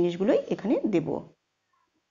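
A woman speaking in Bengali narration, her voice stopping about a second and a half in and giving way to dead silence.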